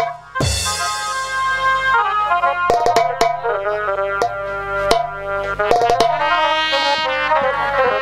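Live jatra stage music: a melody of held notes on a brass-like wind instrument over drums. Just after the start there is a booming drum hit that falls in pitch, followed by scattered sharp percussion strikes.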